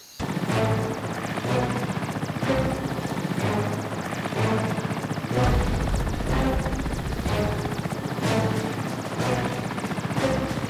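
Twin-turbine Mil Mi-171 helicopter, its rotor chopping steadily and rapidly, with music playing underneath.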